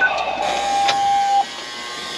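Apartment building entrance door being unlocked: a short electronic beep, then a steady electronic tone for about a second and a half as the lock releases, with a sharp click partway through.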